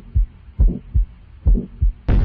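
Heartbeat sound effect: a loud, deep double thump repeating a little under once a second.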